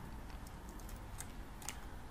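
A few faint clicks of computer keys over quiet room noise.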